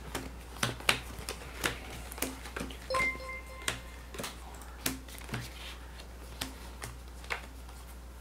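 Playing cards being handled and laid down on a table as they are counted: soft, irregular clicks and slaps about every half second. About three seconds in, a short electronic chime of well under a second plays, a stream's new-follower alert.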